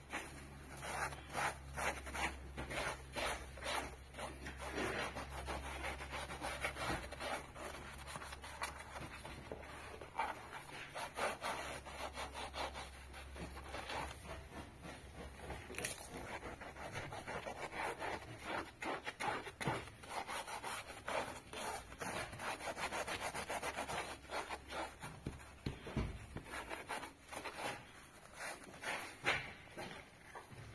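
Scouring sponge scrubbed back and forth over a soapy fabric-covered car headrest: a continuous run of quick, uneven scrubbing strokes.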